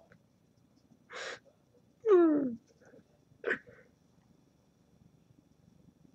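A young man sniffling and acting out crying: a sniff about a second in, then a loud sob that falls in pitch about two seconds in, then another short sniff.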